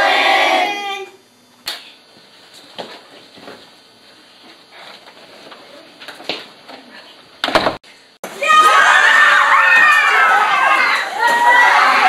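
A classroom full of children shouting and screaming in a sudden uproar, breaking out about eight seconds in. Before it the room is quiet apart from a few scattered knocks and a sharp thump just before the shouting starts.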